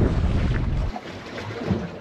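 Wind rumbling on the microphone over water around a boat, cutting off abruptly about a second in to a much quieter low background.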